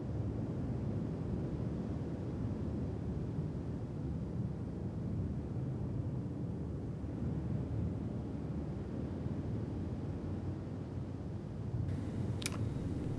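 A steady, low rumbling wash of noise, with no clear tone or beat.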